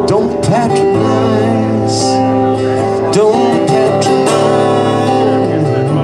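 Solo steel-string acoustic guitar being strummed in a slow ballad, with a man's voice singing over it at times, heard through a stage PA.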